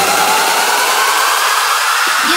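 Electronic dance music build-up played over club speakers: a rushing noise sweep with a single synth tone rising steadily in pitch, the bass cut out.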